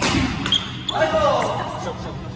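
Badminton racket striking a shuttlecock with a sharp crack, a second knock about half a second later, then a player's voice calling out from about a second in.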